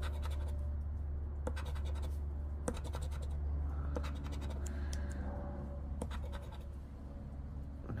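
The edge of a casino chip scratching the coating off a scratch-off lottery ticket, in short scraping strokes with small clicks, over a steady low hum.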